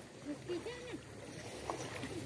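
Distant voices calling out briefly over the steady wash of a shallow river, with a light click near the end.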